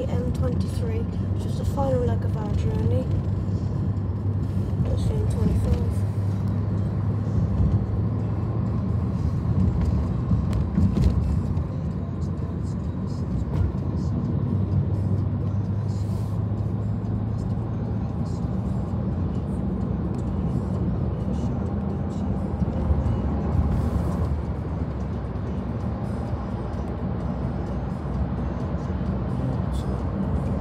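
Steady low rumble of tyre and road noise inside a car cruising at speed on a motorway, with a voice heard briefly in the first few seconds.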